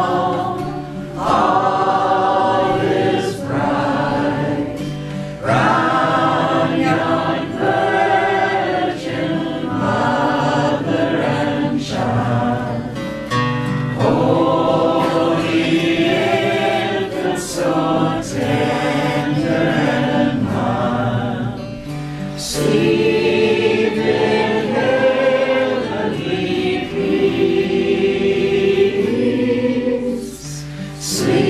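Live acoustic folk music: a man and a woman singing together in harmony while both play acoustic guitars.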